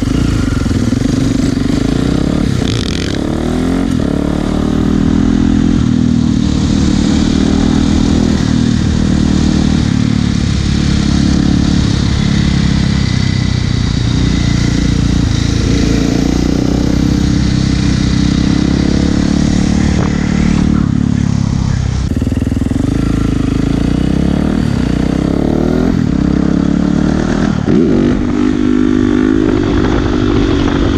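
Supermoto motorcycle engine running under load through wheelies, its pitch rising and falling with the throttle. The revs drop briefly past the middle and climb again near the end.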